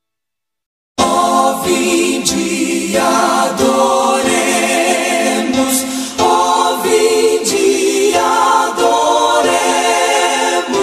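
Silence for about a second, then a gospel song starts abruptly: a choir sings sustained, wordless chords that shift every couple of seconds.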